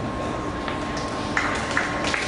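Indoor pool-hall background noise with a faint steady tone, and the first few scattered claps from spectators coming in past halfway as applause for a dive begins.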